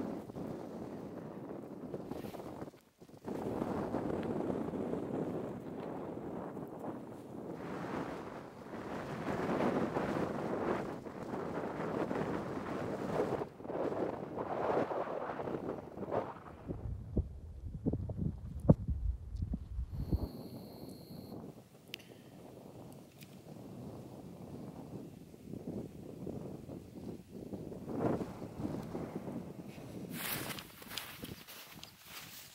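Wind gusting over the microphone, swelling and easing, with a heavier low buffeting gust a little past the middle.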